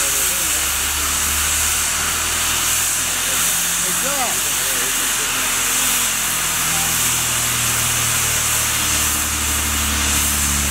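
Steam locomotive No. 734, a 2-8-0, hissing steadily as it vents steam while the turntable turns, over a low steady hum.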